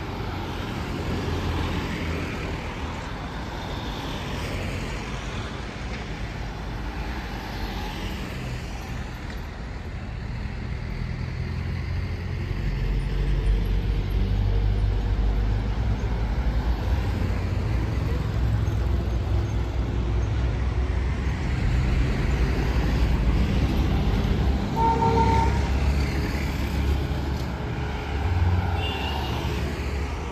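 Street traffic: cars and other vehicles running and passing on a town road, a steady rumble that grows louder about halfway through. A short vehicle horn toot sounds near the end.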